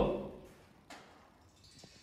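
Near silence: room tone after a voice trails off at the start, with one faint click about a second in.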